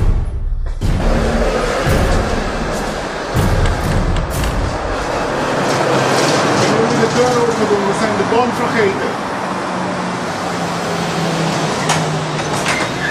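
Indistinct voices over a loud, steady noisy background, with a few sharp knocks in the first few seconds.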